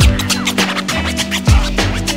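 Instrumental hip hop beat with turntable scratching over it: deep kick drums near the start and about a second and a half in, held bass and keyboard tones, and short sweeping scratches of a record, with no rapping.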